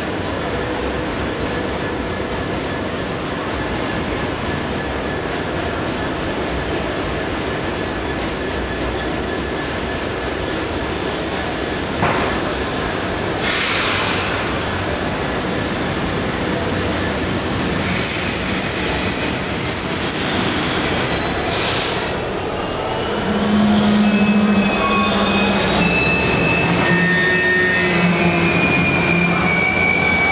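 Freight train of coal hopper wagons rumbling slowly through the platform, with a few sharp clanks and high-pitched wheel squeals in the second half.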